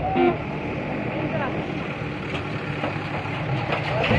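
Cattle-market background of men's voices calling, with a short loud call just at the start, over a steady low engine hum.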